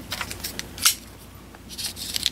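A few short scrapes and clicks of handling as a folding knife and the cardboard packaging are picked up, the loudest about a second in.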